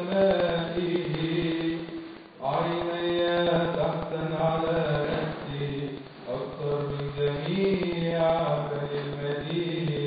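A man's solo voice chanting a liturgical reading on long, held notes, with short breath pauses about two and six seconds in.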